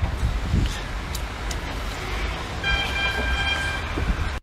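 Steady low rumble of wind on the microphone, with a horn sounding one steady tone for about a second near the end.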